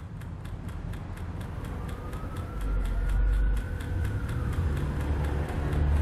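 Trailer sound design: a low rumble that builds in loudness under an even ticking of about three to four clicks a second, with a faint whine rising and falling in the middle.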